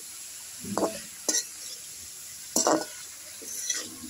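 Metal spatula stirring and scraping sliced bitter gourd, potato and prawns around a metal frying pan, about four separate strokes, over a faint steady sizzle of the frying vegetables.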